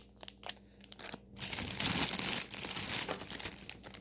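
Clear plastic zip-top bags of wax melts crinkling as they are handled. A few light clicks at first, then steady crinkling from about a second and a half in until near the end.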